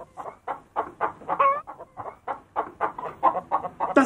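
A domestic hen clucking over and over while being held, with short calls coming about four a second.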